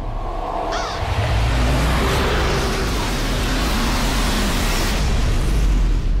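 Film-trailer sound effect: a loud rushing noise over a deep rumble, swelling about a second in and holding until the title card, then easing off.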